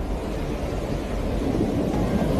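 Stormy surf and wind at the shore: a steady, low rumbling roar that grows a little louder near the end.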